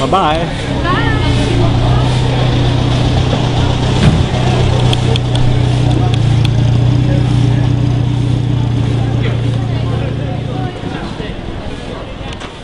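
A steady low hum, like a running motor, with people's voices over it in the first second or so. The hum stops shortly before the end.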